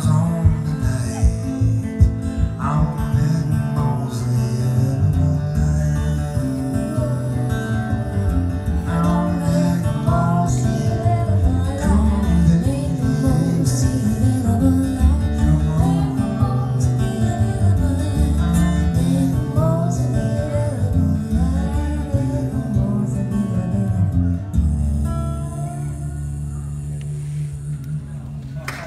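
Acoustic guitar played live through a PA, a busy picked instrumental passage that closes a song, settling onto a sustained ringing chord about 25 seconds in.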